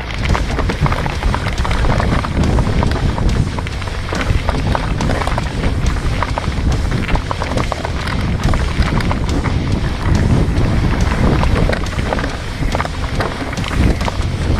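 Riding noise from a mountain bike descending rough dirt singletrack: wind buffeting the bike-mounted camera's microphone, tyres on dirt and rock, and the chain and frame rattling with many small knocks over bumps. It grows loud suddenly at the very start and stays loud.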